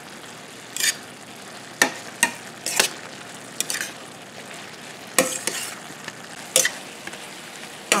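Green beans, onions and peppers sizzling steadily in a buttery soy sauce and brown sugar glaze in a stainless steel skillet, stirred with a slotted spatula that scrapes and clacks against the pan about eight times at irregular intervals.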